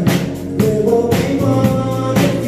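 A live rock band playing: a man singing over electric guitar, bass guitar and a drum kit keeping a steady beat.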